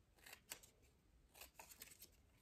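Faint snips of small scissors cutting short slits into construction paper: a couple of single snips early, then a quick run of several snips from about one and a half seconds in.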